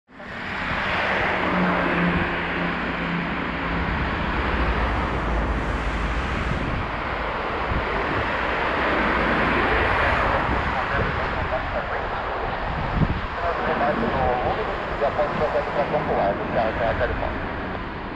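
Steady wind noise on the microphone mixed with the distant, continuous sound of a Gulfstream G550 business jet's turbofan engines on final approach. Radio voices with air-traffic chatter come in for the last few seconds.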